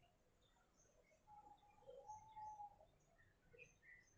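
Near silence: room tone with faint, scattered bird chirps from a distance, including one thin held note for about a second and a half in the middle.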